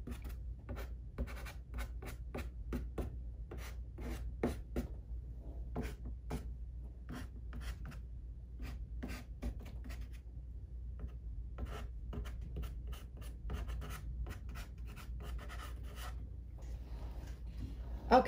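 A stick of dark soft pastel scratching and rubbing across pastel paper in quick, repeated short strokes, laying in dark colour. The strokes stop shortly before the end.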